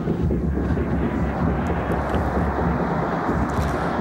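Stadium crowd noise at a football match: a steady, even din from the stands, with no single shout or whistle standing out.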